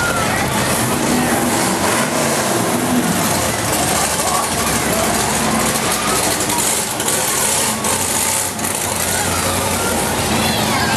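Classic cars and a gasser-style hot rod cruising slowly past, engines running, amid steady crowd chatter.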